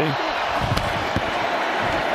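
Steady football-stadium crowd noise, with a couple of short, faint knocks about a second in.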